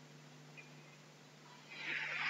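Faint steady low hum of room tone, then about three-quarters of the way in a loud hissy sound sets in suddenly.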